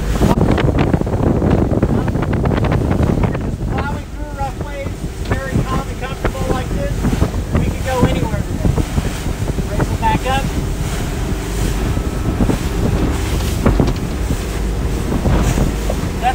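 Wind buffeting the microphone of a 2011 Rinker 276 bowrider running at cruise over choppy water, with its 8.2L MerCruiser sterndrive engine as a steady hum underneath.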